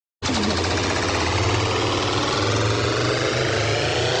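A steady, loud buzzing rattle, mechanical-sounding, starting a moment in and holding level.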